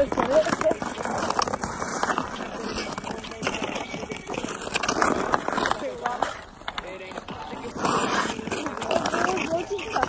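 Indistinct voices without clear words, over the scrape and knock of ice skates and hockey sticks on pond ice.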